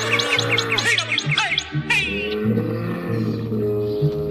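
Instrumental huapango music with a low bass line of held notes, and bird chirps laid over it in the first second or so.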